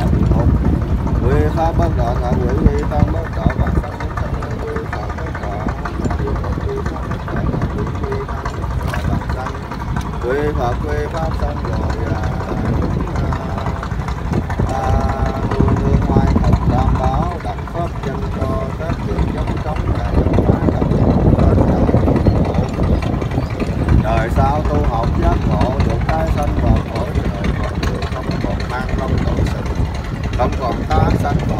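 Voices reciting Buddhist prayers in Vietnamese in scattered short phrases, over a steady low rumble.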